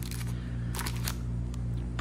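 A few short clicks and a brief rustle in the middle, from a hard plastic graded card slab in a clear plastic sleeve being turned in the hand. A steady low hum runs underneath.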